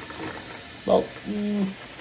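Steady hiss of a pot of salted water boiling with fava beans blanching in it, under a man's brief words about a second in.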